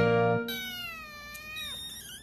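Kitten meowing: one long, high-pitched meow that starts about half a second in and falls in pitch at its end, just after background music cuts off.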